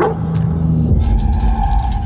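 Trailer score sound design: a sustained low drone with a steady higher tone over it, and a deep rumble swelling in about a second in.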